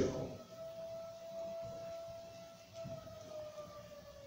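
Faint siren sounding one steady wailing tone that, in the second half, slowly slides lower in pitch, as a mechanical siren does when winding down.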